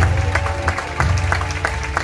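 Music with deep bass notes and held tones playing over an audience's sustained applause and clapping.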